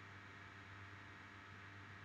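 Near silence: room tone, a steady low hum under a faint even hiss.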